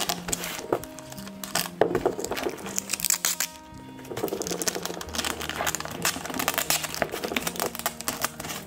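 Background music with a steady melody, over the crinkling and tearing of metallic foil tape being pulled off its roll and pressed down onto styrofoam.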